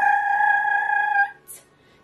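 A woman's voice holding one high, steady sung note for about a second and a half, then cutting off, with a brief faint breath-like hiss just after.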